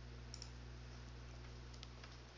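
Faint room noise from a desk microphone with a steady low hum, and a few soft computer mouse clicks, one near the start and one near the end.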